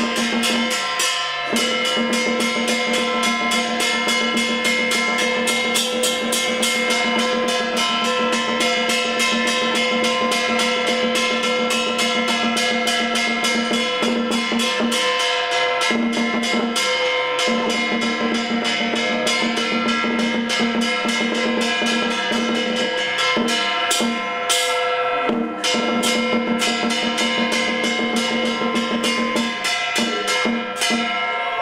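Taoist ritual percussion ensemble: drum, gongs and cymbals struck rapidly and continuously, over a steady held pitched tone that breaks off briefly a few times.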